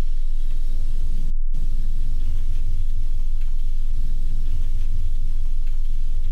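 Deep, steady low rumble of a horror-film sound-design drone, cutting out for a moment about a second and a half in.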